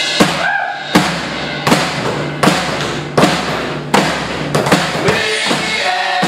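Live band playing: a drum kit hitting hard on a steady beat about every three quarters of a second, under a strummed acoustic guitar, with a voice coming in briefly.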